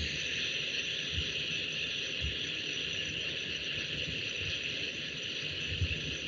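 Steady background hiss with no speech, and a couple of faint low knocks in the first half.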